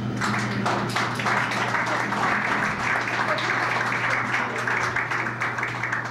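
Audience applauding: a dense patter of hand-clapping that starts at once and keeps on, over a steady low hum.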